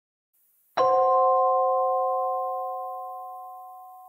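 A single electronic chime, a three-note chord struck once about three-quarters of a second in and slowly fading away: an opening title sting.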